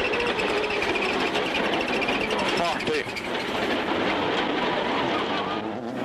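Subaru Impreza WRC rally car's engine running hard at speed through a wet stage, its pitch wavering as it revs.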